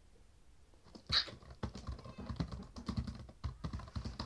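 Typing on a laptop keyboard: a run of light, irregular key clicks. One short sharp sound comes about a second in, just before the clicking starts.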